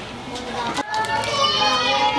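Children's voices talking, with low room noise before an abrupt cut a little under a second in.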